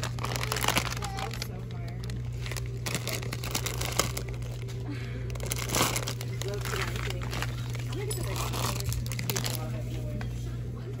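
Plastic instant-noodle packets crinkling and rustling as they are picked up and handled, in irregular bursts, over a steady low hum and indistinct background voices.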